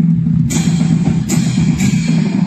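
Marching band playing loudly, low sustained notes over drums, with three cymbal crashes about half a second in, just past a second, and near the end.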